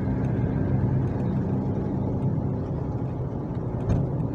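Steady low rumble of a car's engine and tyres heard from inside the moving car. The last of the radio music fades out in the first second or so.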